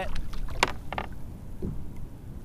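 Water sloshing against a kayak hull in choppy, windy conditions, with wind rumbling on the microphone. Two sharp clicks come close together near the middle as a small hooked redfish is brought alongside.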